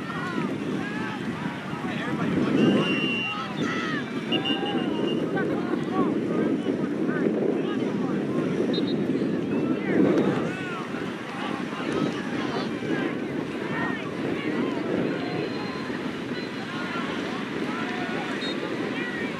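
Wind rumbling steadily across the microphone, with many scattered, distant shouts and calls from soccer players and spectators.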